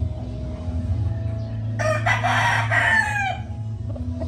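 A gamecock crowing once, starting about two seconds in: one crow of about a second and a half that falls in pitch at the end, over background music.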